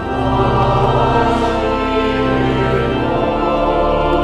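Choir singing a slow hymn in held chords, the chord changing at the start and again about three seconds in.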